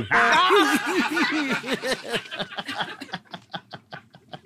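A man and a woman laughing hard together. The laughter starts with loud, quick 'ha-ha' pulses and trails off over the next few seconds into quieter, breathy gasps.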